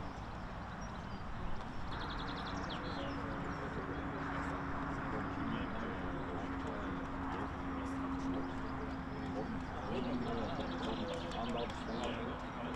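Open-air ambience with indistinct voices in the distance, a steady low hum setting in after a couple of seconds, and a few brief high chirps.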